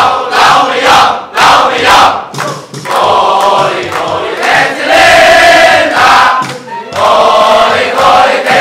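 A large crowd of men singing a school cheer song together, unaccompanied. In the first few seconds they shout short syllables to a steady beat, about two a second; after that they sing long held notes.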